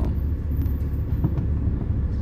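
Steady low rumble of a car's engine and tyres on the road, heard from inside the cabin of the moving car.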